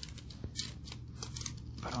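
Light, irregular clicks and rattles of small plastic parts: an N-scale model train car and a plastic rerailer ramp being handled on the track.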